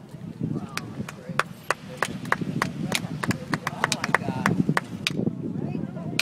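Stones clicking and knocking against each other in a quick, irregular series of sharp clicks, about three a second, as a rock is set and shifted into balance on top of a stacked rock sculpture.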